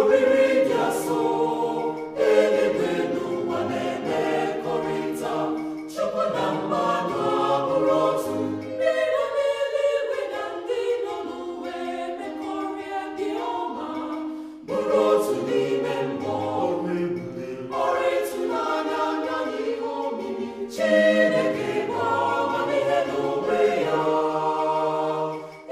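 Choir singing in sustained chords, in phrases a few seconds long.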